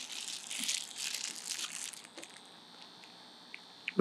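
Plastic wrap crinkling as it is handled, for about two seconds, followed by a faint, steady high-pitched whine.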